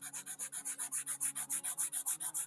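Kalour pastel pencil hatching quickly back and forth on Pastelmat paper, an even scratchy rubbing at about seven strokes a second. The stiff pastel lead is going on with effort.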